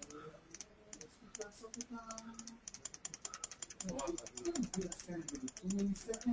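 Computer keyboard typing: a few scattered keystrokes, then a fast, steady run of typing from about two and a half seconds in. A faint voice murmurs underneath in the middle and near the end.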